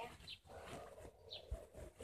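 Phone rubbing against clothing, with a low bump about one and a half seconds in, and two short, faint bird chirps in the background.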